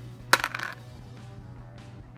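A dried extracted wisdom tooth dropped into an empty plastic food container: one sharp click about a third of a second in, with a brief ringing rattle after it.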